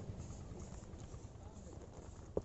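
Faint outdoor ambience with a low, uneven rumble of wind on the phone's microphone.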